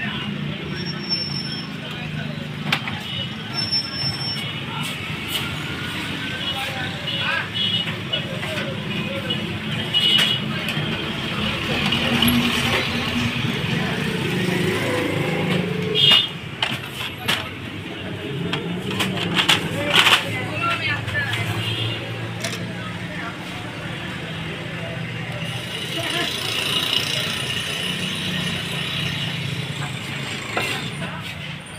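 Indistinct voices talking throughout over a low steady hum. A few sharp knocks and clicks come from the HP LaserJet Pro 400 printer being handled, the loudest about 16 and 20 seconds in.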